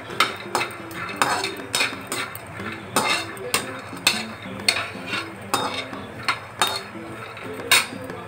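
A perforated steel spatula scraping and clinking against a kadhai while stirring peanuts as they dry-roast, the nuts rattling across the pan. The strokes come at an uneven pace, about two a second, and the loudest is near the end.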